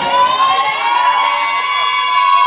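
A long, loud, high-pitched held tone with many overtones, rising slightly at the start and then held level for about three seconds.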